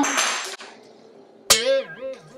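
A plastic bag of shredded coleslaw mix rustling as it is tipped over a bowl. About a second and a half in, a person's voice comes in with one short vocal note that falls in pitch and wavers.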